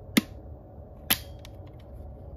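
Two sharp plastic clicks about a second apart from the eject switch of a Wildgame Innovations Cloak Lightsout trail camera being slid over to release its battery tray.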